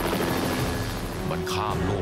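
Helicopter rotor chop over a dense, loud rumble. About one and a half seconds in, a wavering high-pitched cry rises and falls over a held steady note.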